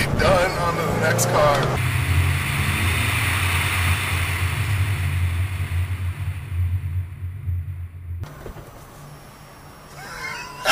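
2013 Ford Mustang GT's 5.0-litre V8 running at a steady pitch under a hiss of wind and tyre noise, growing quieter over the last few seconds.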